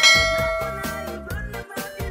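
A bright bell-chime sound effect strikes once and rings out, fading over about a second and a half, over upbeat background music with a steady beat.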